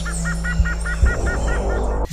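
A bird calls in a quick series of about nine short rising-and-falling notes over a low steady drone, as part of an intro soundscape.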